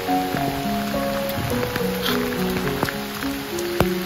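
Background music of slow, held melodic notes, with steady rain falling behind it and a few sharp drop sounds.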